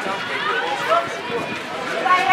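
Overlapping voices of spectators and players chattering and calling out at a netball court, at an even moderate level with no single loud event.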